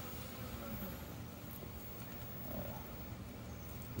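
A steady low hum under faint background noise.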